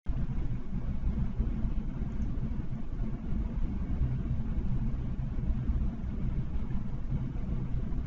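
Steady low rumble of background noise picked up by the recording microphone, cutting in suddenly out of silence.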